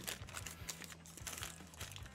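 Faint scattered crunching and crinkling from hard Katapan biscuits being chewed and handled in a small bag, over quiet steady background music.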